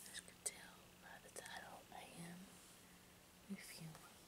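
A woman whispering softly, with a few sharp clicks.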